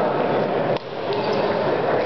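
Table-tennis hall din: a steady busy clatter with a few sharp clicks of celluloid balls off bats and tables, dipping briefly about a second in.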